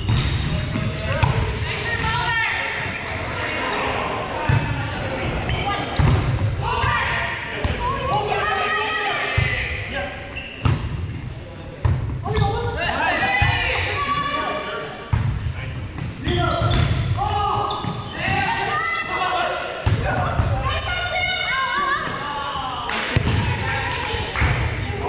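Volleyball rally in a large gym: sharp knocks of the ball being hit and hitting the hardwood floor every few seconds, with players calling and chatting, all echoing around the hall.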